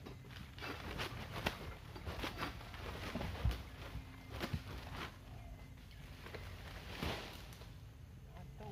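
Scattered sharp knocks and rustling from a long-pole oil palm sickle (egrek) working in the palm crown, the blade striking and tugging at frond bases. The loudest knock comes about three and a half seconds in.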